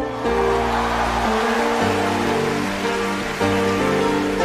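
Rock band playing live in an instrumental stretch with no singing: held chords that change every second or so, over a steady hiss.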